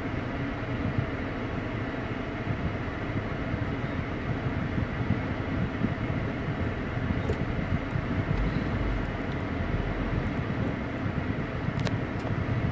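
Steady low rumble and hiss of a car cabin, from the engine, road and ventilation, with a deeper rumble swelling briefly about two-thirds of the way through.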